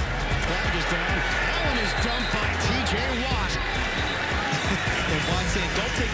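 On-field football audio: repeated thuds of players and pads colliding at the line of scrimmage, with shouting voices and stadium crowd noise, over background music with a steady low bass.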